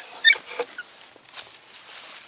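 Antique hand-cranked geared drill finishing a hole in a wooden post: a short, sharp, high-pitched squeak about a quarter-second in, then only faint handling clicks.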